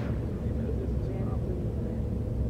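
Steady low starship interior hum, the constant engine drone laid under scenes aboard the USS Voyager.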